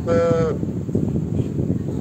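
A person's voice saying one high-pitched, drawn-out word for about half a second, then steady low background noise.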